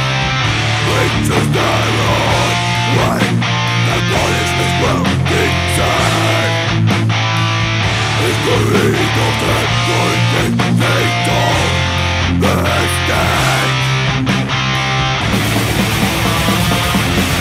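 Blackened death metal: distorted electric guitars over bass and drums, with held low bass notes that change every couple of seconds.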